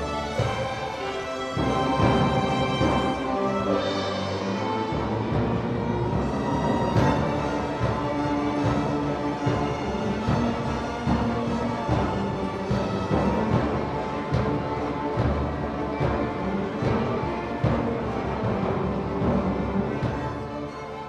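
A high school string orchestra playing a piece together under a conductor, with sustained bowed chords and repeated low strokes underneath.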